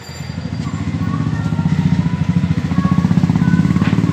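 An engine running with a rapid, even pulsing beat, growing louder over the first two seconds and then holding steady.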